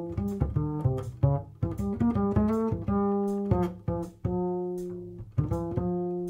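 New Standard LaScala hybrid double bass played pizzicato, unaccompanied: a line of plucked notes, several a second at first, giving way to longer held notes in the second half. It is heard both acoustically through a microphone at the bass (left channel) and amplified through a Sansamp Para Driver DI and amplifier (right channel).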